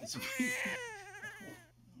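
Newborn baby crying: one long wavering wail that falls slightly in pitch and breaks off about a second and a half in.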